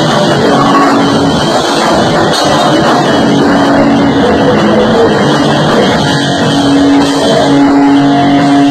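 A live rock band playing loud: drum kit and electric guitar together, with held guitar notes over steady drumming.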